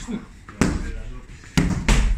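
Strikes landing on a padded strike shield: three dull thuds, one about half a second in and two close together near the end.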